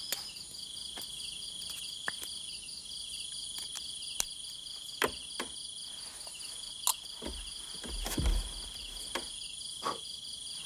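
Steady, rapidly pulsing chirping of insects, with several sharp clicks scattered through it and a low thump about eight seconds in.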